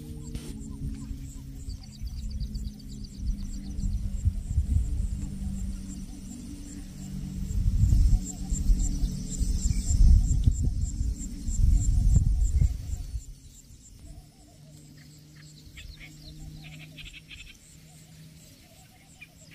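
Wind buffeting the microphone in gusts, strongest in the middle and dropping off sharply about two-thirds of the way through, with faint high chirping calls above it.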